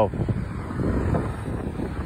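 Wind buffeting the phone's microphone: a low, uneven rush with no clear tones.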